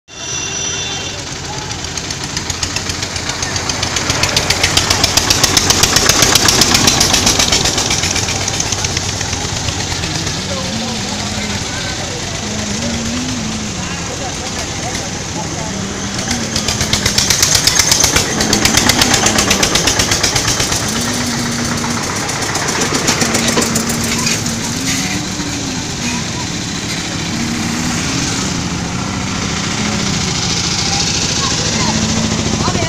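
A vehicle engine running close by with a rapid, even putter, swelling louder twice. From about a third of the way in, a voice sings a wavering melody over it.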